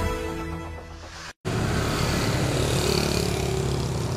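Theme music fading out over the first second, a moment's dropout, then steady street traffic noise with a motorbike going past.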